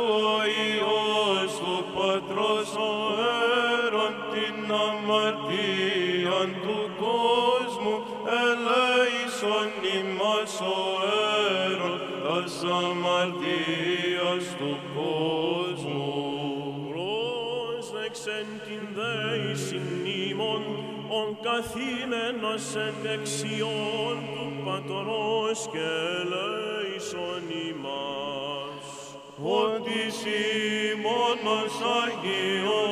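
Greek Orthodox Byzantine chant: male voices sing a slow, ornamented melody in Greek over a steadily held lower note.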